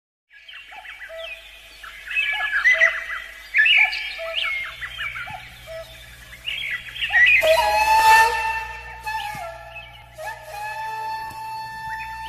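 Birds chirping and singing over soft background music. A low sustained tone comes in about four and a half seconds in, and long held notes join from about seven seconds.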